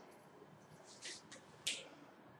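Faint marker strokes writing on a board: a few short scratchy strokes about a second in and one more near the end.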